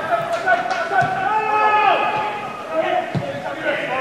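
Football players shouting to each other on the pitch, with a few thuds of the ball being kicked; the loudest thud comes about three seconds in.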